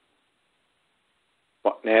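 A pause in a sermon: near silence with faint hiss, then a man's voice resumes speaking near the end.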